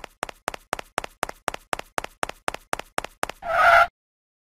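Cartoon footstep sound effect: quick even taps, about four a second, growing louder as the animated mascot walks, then a short held tone near the end.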